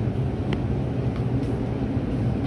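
Steady low rumble of supermarket background noise, with a faint click about half a second in.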